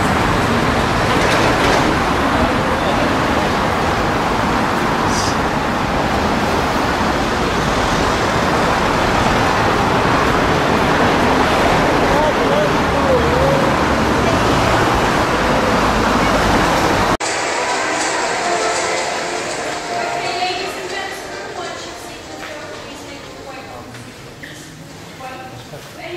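Steady noise of road traffic, cars and vans, passing close by on a city bridge's roadway. About seventeen seconds in it cuts off suddenly, giving way to a much quieter indoor passage with a voice.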